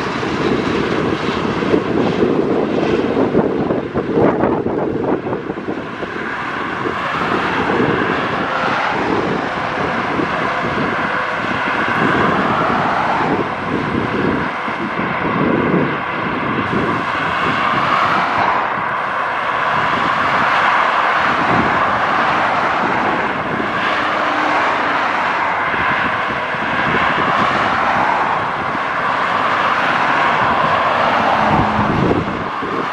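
Highway traffic passing below: a continuous rush of tyre and engine noise from cars and trucks, swelling and easing as vehicles go by.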